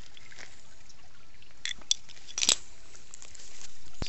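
Shallow creek water trickling under a steady hiss, with a few short sharp clicks about halfway through. The hiss grows louder near the end.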